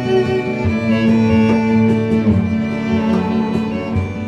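Instrumental passage of a live acoustic song: a violin playing long held notes over the band's accompaniment.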